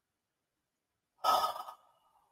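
Silence, then a little over a second in, a woman's short audible breath lasting about half a second.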